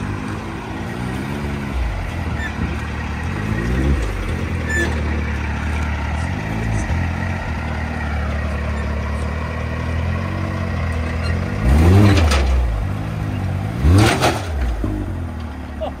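A 2022 Can-Am Maverick X3 XRS side-by-side's turbocharged three-cylinder engine runs at low revs as it is driven slowly. The revs rise briefly about four seconds in. Near the end come two louder revs, a couple of seconds apart, as the machine climbs onto a flatbed trailer.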